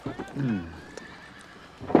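A low voiced 'mm' that falls in pitch, about half a second in, over scattered hoof clops and knocks from a horse and wagon, with the faint tail of a horse's whinny.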